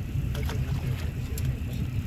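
Fishing boat's motor running steadily at slow trolling speed, a low even rumble.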